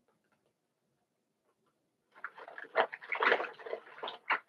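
Paper fast-food bag crinkling and rustling as hands rummage inside it, starting about halfway through after near quiet and growing loudest near the end.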